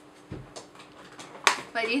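A soft low thump, a few faint ticks, and then a sharp click, the loudest sound, just before a woman starts speaking.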